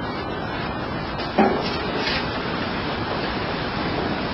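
Steady hiss of recording noise during a pause in speech, with one brief soft sound about a second and a half in.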